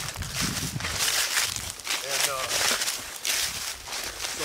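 Footsteps crunching through dry fallen leaves at a steady walking pace, with a brief voice sound about two seconds in.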